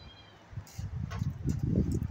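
A kitten wrestling and pawing a small ball on a soft blanket makes a run of soft, dull thumps and rustles that builds through the second half. A brief high squeak fades out just at the start.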